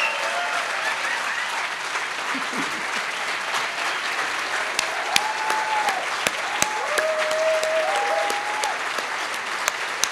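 Audience applauding and cheering, with a few drawn-out whoops in the middle. From about five seconds in, sharp single claps sound close to the microphone among the crowd's clapping.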